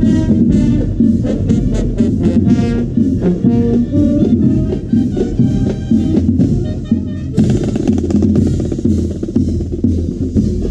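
Marching band playing at close range: brass and saxophones carry a tune over bass and snare drums. About seven seconds in, the sound turns abruptly to fast, dense drumming.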